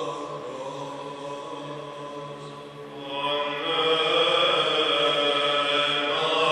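Byzantine chant sung live in a church by male chanters. A melodist sings the wordless kratema syllables over a low drone (ison) held steady underneath. The melody eases off a little, then grows louder and brighter about three seconds in.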